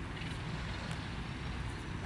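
Steady low outdoor rumble with a few faint high ticks.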